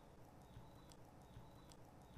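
Near silence: faint room tone with a few faint, short clicks.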